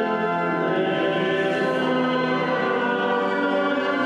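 Church pipe organ playing slow, held chords, the harmony changing about two and a half seconds in.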